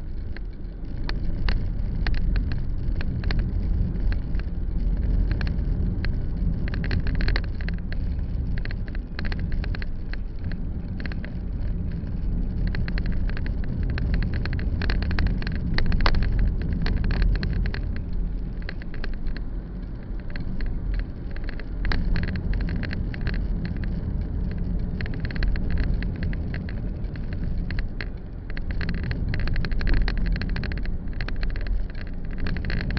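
Road and engine rumble of a car driving in city traffic, heard from inside the cabin, with frequent small rattling clicks throughout. It gets louder about halfway through, as a city bus passes alongside.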